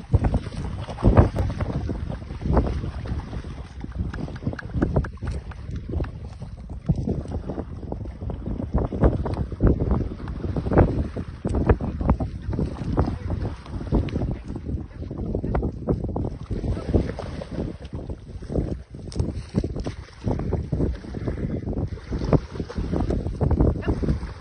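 Repeated irregular splashing as a foal and a person wade and run through shallow canal water, with wind buffeting the microphone.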